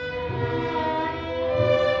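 Live chamber orchestra of violins and cellos playing long, held bowed notes, with a low cello line underneath.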